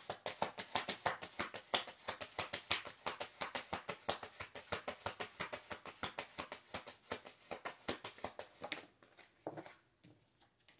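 Tarot deck being shuffled by hand: a fast, even run of card slaps, several a second, that stops about nine seconds in, followed by a couple of softer taps.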